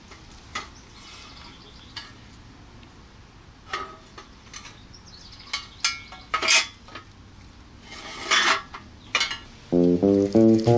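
A pressed-steel toy dump truck's bed shifting and lowering on its hinge, making a string of short metallic clinks and scrapes that come thicker in the second half. A guitar-led song starts right at the end.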